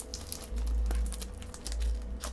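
A thin filter sliding into the filter slot of a 3D-printed plastic matte box: scattered small clicks and scrapes of the filter against the printed plastic, over a low rumble.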